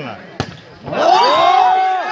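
A single sharp smack as a volleyball is spiked, about half a second in. About a second in, a loud, drawn-out shout follows, rising and falling in pitch.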